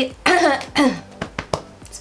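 A woman coughs twice, about half a second apart, followed by a few faint clicks a little over a second in.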